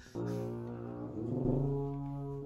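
Background music on low brass: held notes that begin just after the start, with the notes changing a little over a second in.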